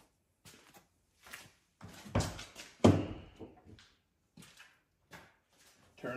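A string of light knocks and clicks with two louder thunks, a little over two seconds in and just under three seconds in, the second followed by a brief ring.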